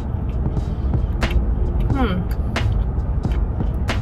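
Mouth sounds of someone chewing a sandwich: a few sharp clicks and a short falling "mmm" hum about halfway through. Under them runs a steady low rumble from the car she sits in.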